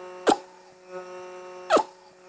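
Vacuum cupping machine's pump humming steadily. Two short, sharp pops about a second and a half apart come from the suction cup as it is worked over the oiled skin.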